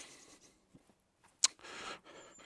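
A single sharp click about one and a half seconds in, followed by a brief rubbing, scraping sound: a uPVC patio door's latch and handle as someone goes through the door.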